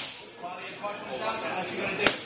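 Boxing gloves striking focus mitts: a sharp smack right at the start, then a fainter one shortly after.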